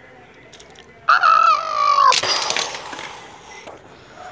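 A child's voice making a fight sound effect. About a second in comes a loud held cry that falls slightly in pitch, then a harsh noisy burst that fades over about a second.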